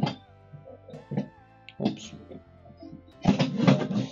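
Soft background guitar music, with a loud knock about three seconds in as a removable dinette table top is set down onto its pedestal leg.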